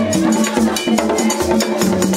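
Haitian Vodou drum ensemble: a large peg-tuned drum and smaller drums played with sticks and hands in a fast, interlocking rhythm. Sharp, bright stick strikes run over deep drum beats that come about three times a second.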